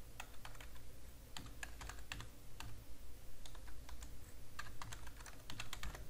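Typing on a computer keyboard: a run of irregular keystroke clicks as a web address is keyed in, over a steady low hum.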